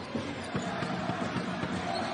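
Basketball dribbled on a hardwood court, a run of repeated bounces over the steady noise of an arena crowd.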